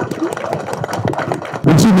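Scattered hand claps and murmuring voices from the audience and people on stage, then a man's voice through a microphone and PA starts loudly about a second and a half in.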